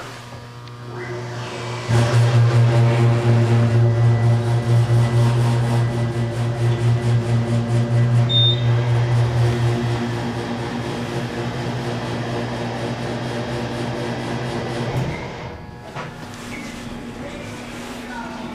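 Elevator drive motor running with a loud, steady low hum as the car travels. The hum starts suddenly about two seconds in, eases off about ten seconds in and stops near the end. Faint background music plays throughout.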